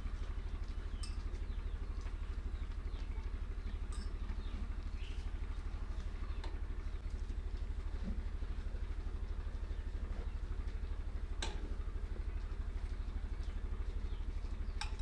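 Steady low engine rumble with a fast, even pulse, with a few scattered light clicks over it, the sharpest about eleven seconds in.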